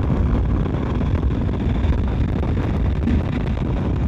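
Steady wind rush over the microphone of a motorcycle riding at road speed, with the bike's low running noise underneath.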